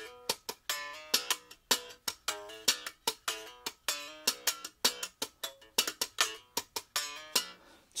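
Strandberg Boden NX 7 seven-string guitar played in quick, short, staccato plucked notes and chord stabs in a steady rhythm. Each note is cut short, and the playing stops shortly before the end.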